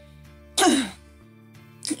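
A woman clears her throat once, briefly, about half a second in, over faint background music with long held notes.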